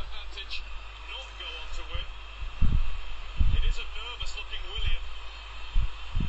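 A faint voice in the background with a steady low hum, and three short low thumps, the loudest about two and a half seconds in.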